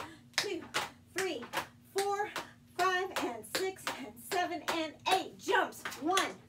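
Tap shoes striking a metal tray and a wooden floor in a quick, even rhythm of sharp clicks, about two to three a second, as paradiddle tap steps are danced, with a voice vocalizing along.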